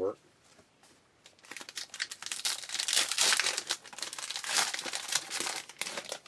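Foil trading-card pack wrapper crinkling and tearing as it is opened by hand. It starts about a second and a half in and runs on as a dense, irregular crackle.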